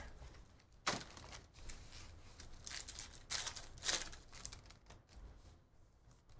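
Trading-card pack wrappers crinkling and tearing open as packs are unwrapped by hand, with sharp crackles about a second in and again between three and four seconds.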